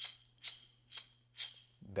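Wooden cylinder shaker filled with metal beads, shaken back and forth in four strokes about two a second. It is played with the arm opening from the elbow, a faulty motion that sends the energy downward and leaves the beads resting at the bottom of the shaker.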